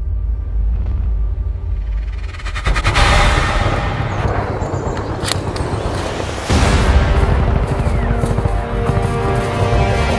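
Dramatic film score: a low rumbling drone that swells about three seconds in, with a sharp hit near the middle and a heavy boom about six and a half seconds in, after which sustained chords carry on.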